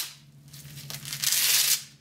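Hook-and-loop closure of a nylon-webbing pedal strap being ripped open, a rasping tear about a second in that lasts most of a second.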